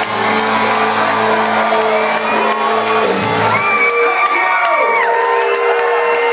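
A rock band's final chord ringing out on electric guitar and bass, cutting off about three and a half seconds in, followed by a club crowd cheering.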